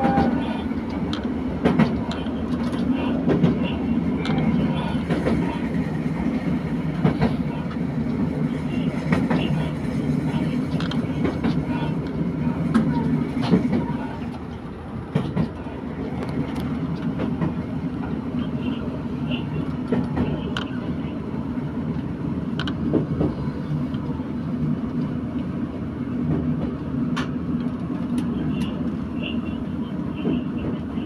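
Inside a JR Hokkaido H100-series diesel railcar under way: the engine's steady drone under the clickety-clack of wheels over rail joints. It eases slightly quieter about halfway through.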